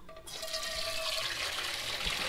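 Water poured over boiled mopane worms to wash off the mud and sand, a steady rush of water starting a moment in.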